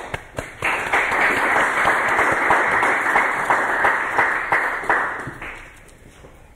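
Audience applauding, starting about half a second in and dying away around five seconds in.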